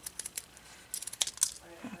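Faint clicks and rustles from handling a pair of scissors and a satin ribbon bow: a few light clicks near the start, then a short cluster of sharper clicks about a second in.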